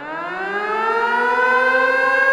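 Air-raid siren winding up: a single wail that rises in pitch and levels off into a steady tone.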